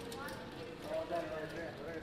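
Murmur of voices at a busy roulette table, with light clacking of plastic casino chips as they are gathered and handled on the felt.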